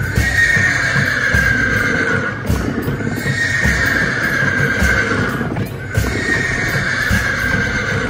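Three long, evenly spaced blasts from a wind instrument, each a held note of about two and a half seconds that sags slightly at its end, over steady drum beats of temple festival music.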